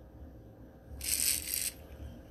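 Metal costume jewelry, a chain necklace and bangle bracelets, jingling briefly as it is handled, a short rattle about a second in, over faint room tone.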